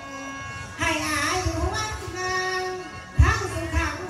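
A woman singing into a microphone, amplified, her voice bending and wavering in pitch in phrases that begin about a second in and again just after three seconds. Low thumps come with the phrases, the loudest just after three seconds.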